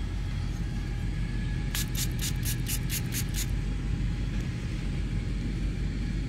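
A steady low machine rumble, like a running motor or engine. A quick run of about seven sharp ticks comes about two seconds in.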